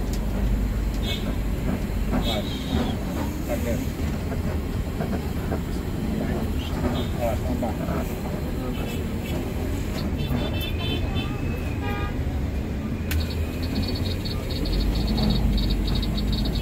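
Interior noise of a moving intercity bus heard from the driver's cab: a steady low engine and road rumble, with scattered clicks and rattles and a few brief high-pitched tones.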